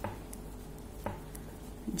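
Metal knitting needles clicking softly against each other as purl stitches are worked, two light clicks about a second apart.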